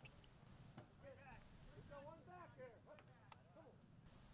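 Near silence, with faint distant voices talking for a couple of seconds in the middle.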